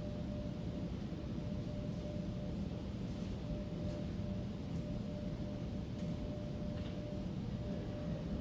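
Steady room tone with a constant faint hum and no speech.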